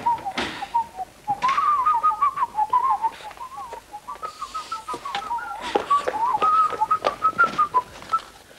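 A person whistling a tune, its short notes hopping up and down within a narrow range, with scattered short knocks and scrapes alongside.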